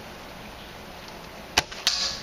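Spring-powered airsoft sniper rifle firing a shot: two sharp snaps about a quarter of a second apart near the end.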